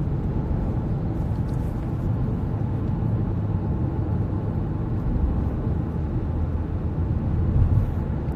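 A steady low rumble with no change in level throughout, like engine and road noise.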